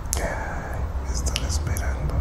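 A person whispering softly, the words not made out, over a steady low hum.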